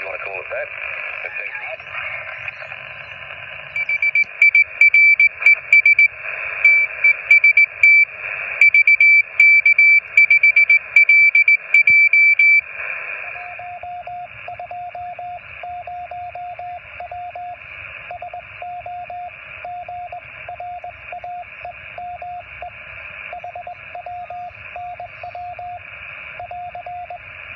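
Yaesu portable HF transceiver's speaker receiving on 40 metres: band hiss with a few sliding tones as it is tuned, then from about four seconds in a loud, high-pitched Morse code signal beeping on and off. About halfway through the radio is switched to CW mode, and another Morse code signal comes through at a lower pitch over softer hiss.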